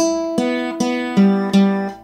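Classical nylon-string guitar played with the index and middle fingers: about five single notes plucked one after another, the last two lower and ringing out before fading near the end.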